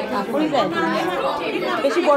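Speech only: several people chatting and talking over one another.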